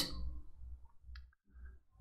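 A faint, short click from a computer keyboard about a second in, over a low steady hum. It is the keystroke that saves the source file.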